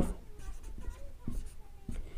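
Pen writing on paper: faint, short scratchy strokes.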